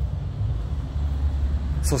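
Steady low rumble of outdoor background noise, with a man's voice starting a word at the very end.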